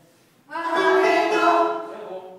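Mixed amateur choir singing a loud held phrase in several voices, entering about half a second in and fading near the end.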